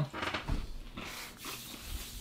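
Quiet chewing of a snack that is crunchy on the outside and chewy in the centre, with a few soft crunches and rustles.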